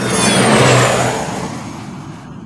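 Closing sound effect of a nightcore dance track: a noisy whoosh that sweeps downward in pitch, swells briefly, then fades out as the song ends.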